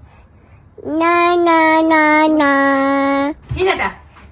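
A baby's voice singing out long, steady held notes in a sing-song run of a few steps, then a short sliding call near the end.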